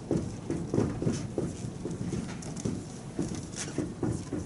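Dry-erase marker writing on a whiteboard: a string of short, irregular squeaks and taps as the letters are drawn.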